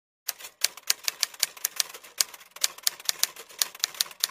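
Typewriter keys clacking in a quick, uneven run of about five strokes a second, starting a moment in. It is a typing sound effect laid over the opening disclaimer text.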